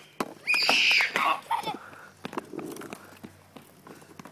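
A child's high-pitched excited shout, rising and falling, about half a second in, with a brief bit of voice after it. The rest is quieter, with a few faint clicks.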